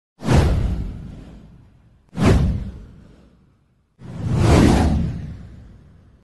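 Three whoosh sound effects for an animated title card, about two seconds apart. The first two hit suddenly and fade out; the third swells up more gradually before fading.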